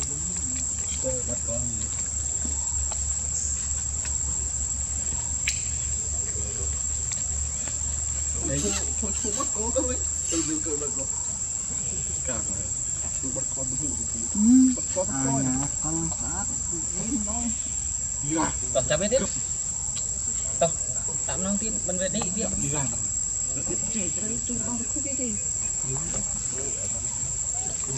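Insects calling in one steady, high-pitched drone.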